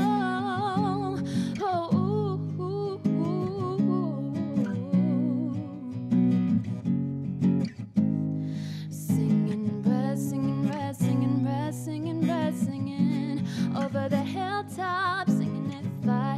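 Acoustic guitar strummed in a steady rhythm, with a woman singing a wavering melody over it. The strums come sharper and more percussive about halfway through.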